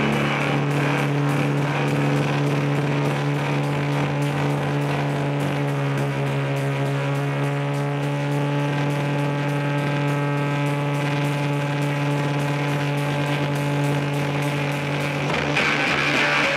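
A live rock band holds a sustained chord, a steady drone of long unchanging notes with no singing. About half a second before the end, fuller playing comes back in.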